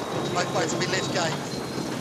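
Faint, indistinct voices over a steady rushing noise.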